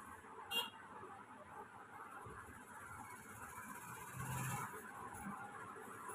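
Faint steady background noise, with one sharp click about half a second in and a short low hum a little after four seconds.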